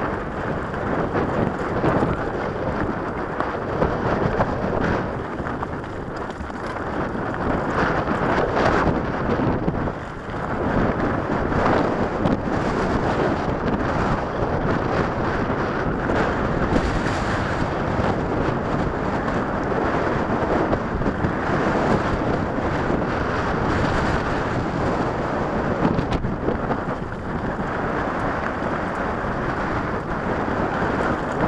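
Wind buffeting the microphone of a camera riding on a moving mountain bike, over the constant rattle and crunch of the bike's tyres on a rocky dirt trail, with irregular bumps and jolts throughout.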